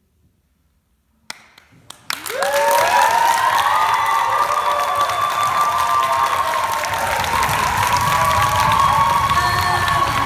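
A moment of silence, then about two seconds in a theatre audience breaks into loud applause and cheering, with whoops and shouts held above the clapping.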